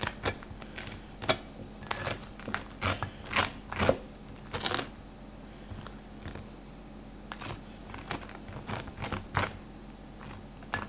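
Table knife sawing through a toasted bagel on a plate: irregular crunchy scrapes and clicks, busiest in the first half.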